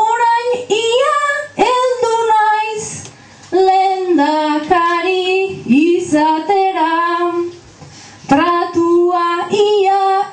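A single high voice singing an improvised Basque verse (bertso) unaccompanied, holding long notes in several phrases with short breaths between them.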